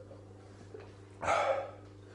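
A man's short, loud, breathy vocal outburst, about half a second long, a little over a second in, as he finishes gulping down a pint of thick aloe vera gel drink.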